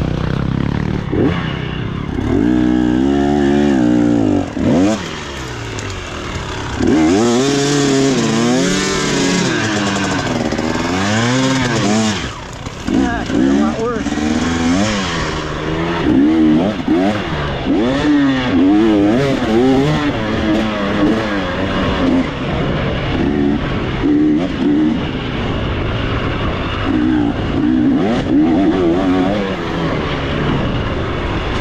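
Dirt bike engine on an off-road trail, heard close from the rider's helmet, its revs rising and falling constantly with quick throttle changes.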